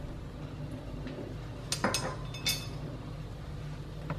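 A metal spoon clinks against the wok about three times, close together, around two seconds in, over a steady low hum.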